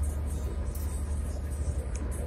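Inside a moving car's cabin: a steady low rumble of tyres and engine at highway speed.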